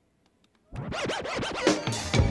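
Music cuts in abruptly about two-thirds of a second in, opening with turntable scratching: quick sweeps up and down in pitch.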